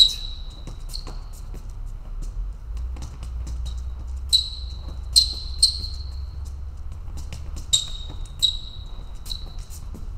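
Sneaker soles squeaking and tapping on a fencing strip during quick fencing footwork (advances, retreats and check steps). About eight short, sharp squeaks come at irregular intervals, with light steps between them and a steady low hum beneath.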